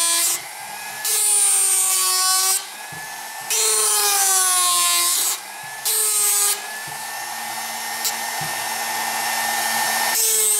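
Foredom flexible-shaft machine driving a reciprocating carving handpiece, its gouge cutting into a wood block in four loud passes, the motor's pitch falling during each one. After the last pass, about two-thirds of the way in, the motor runs on with a steady whine.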